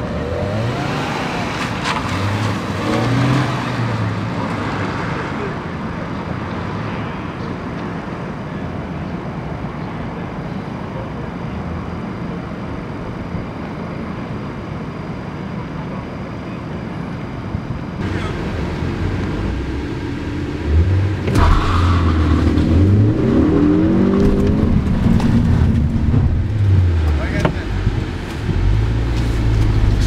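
Ford EcoBoost turbocharged four-cylinder car accelerating hard from a standing start, the engine pitch rising and falling through the gear changes, then running on more steadily. About 18 s in the sound changes abruptly and a louder stretch follows, with the engine revving up repeatedly in rising sweeps.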